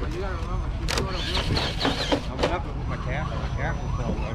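Indistinct voices of several people talking, no clear words, over a steady low rumble, with two sharp clicks about one second and two and a half seconds in.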